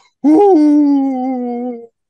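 A man's voice holding one long, loud cheering call. It rises briefly at the onset, then sinks slowly in pitch for about a second and a half before stopping.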